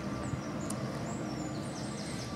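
Steady outdoor background noise with a few short, high chirps of small birds in the distance.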